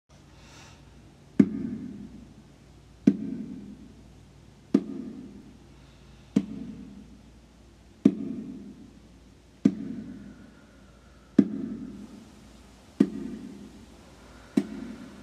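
A baby bongo struck slowly and evenly by hand, about one stroke every 1.6 seconds. Each stroke gives a sharp attack and a low note that rings and fades before the next, eight strokes in all.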